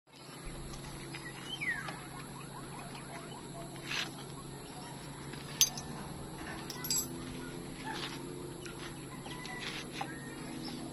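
Quiet outdoor ambience with faint bird chirps and a few sharp clicks and knocks as a small solar panel is handled and fixed onto a bamboo wall. The loudest click comes about halfway through.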